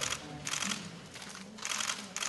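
Camera shutters firing in rapid bursts during a posed group photo, several bursts of fast clicking in two seconds.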